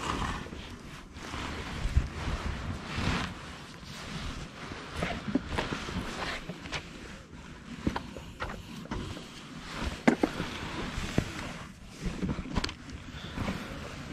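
Clothing rustling against a body-worn camera, with scattered small clicks and knocks, as a fishing rod is handled and a sardine bait is put on a hook.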